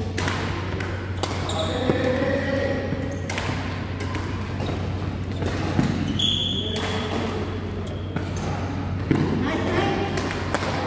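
Badminton rackets striking a shuttlecock in a rally, sharp hits at irregular intervals, with a few short high squeaks and a steady low hum.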